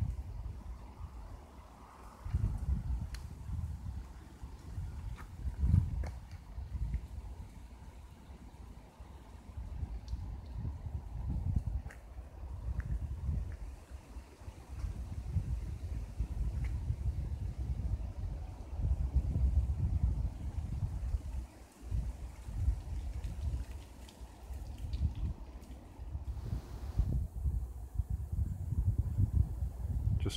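Wind buffeting a mobile phone's microphone: a low, gusting noise that swells and drops every second or two.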